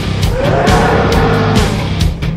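A monster's roar sound effect: one long call that rises and then falls in pitch, over loud music.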